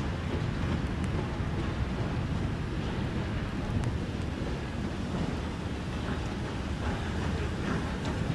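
FS Class 625 steam locomotive (625.100) moving slowly, a steady low rumble with wind buffeting the microphone.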